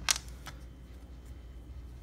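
A few small plastic clicks as accessories are pulled out of a plastic action figure's hands, one right at the start and another about half a second in, over a low steady hum.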